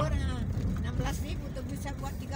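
Steady low engine and road noise from a motorcycle being ridden through traffic, under brief snatches of conversation.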